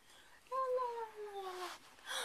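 A girl's voice holding one long wordless note that slides slowly down in pitch. It starts about half a second in and lasts a little over a second.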